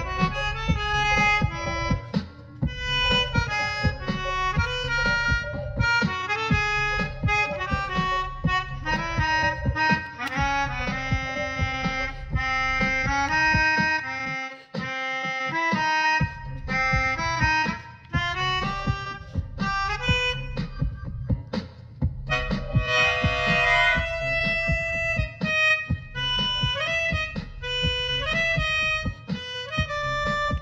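Melodica played in quick, improvised runs of reedy notes, with a thick clustered chord about three quarters of the way through. A low pulsing beat runs underneath and drops out briefly about halfway.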